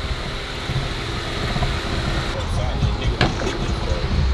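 Cabin noise of a Jeep Wrangler on the move: a steady, uneven low rumble of road and engine noise.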